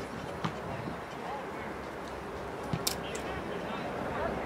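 Open-air football pitch ambience with distant players' voices, and one sharp knock of a ball being kicked about three seconds in.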